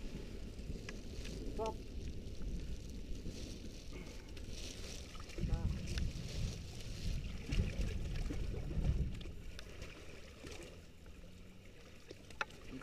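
Muddy water sloshing and splashing as a dirt bike stuck in a puddle is dragged out by hand, growing heavier from about five to nine seconds in.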